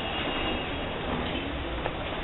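Steady rumbling background noise with a single sharp click near the end.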